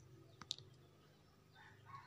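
Near silence: room tone, with a couple of faint short clicks about half a second in.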